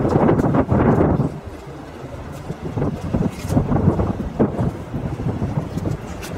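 Strong wind buffeting the microphone: a loud low rumble in the first second or so, then lighter gusts for the rest.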